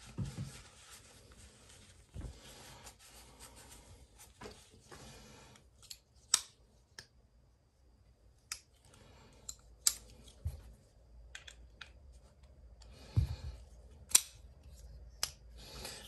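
Small clicks and light scraping as a folding knife is reassembled by hand, its screws driven back in. A few sharp clicks stand out, the loudest about 6, 10 and 14 seconds in.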